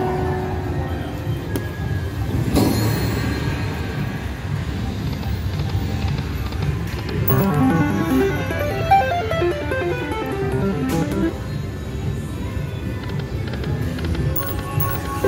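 Fu Dai Lian Lian slot machine's electronic game music and sound effects as its Prosperity free-games feature plays, with a quick run of stepped electronic tones about halfway through as a win comes up.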